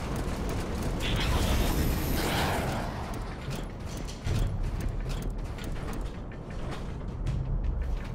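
Animated robot sound effects: mechanical whirring and clanking. A rush of noise swells in the first three seconds, followed by a quick run of sharp metallic clicks and clanks over a low rumble, with background score underneath.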